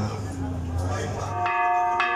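A large hanging temple bell struck once about one and a half seconds in, ringing on with several steady tones. Before it, voices murmur over a low hum.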